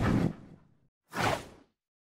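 Logo-sting sound effects: the tail of a deep boom dies away within about half a second, then a single short whoosh comes just past a second in.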